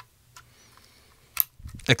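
Two small clicks from an XLR cable and a handheld cable tester being handled, the second one sharper, about a second apart, in a quiet room.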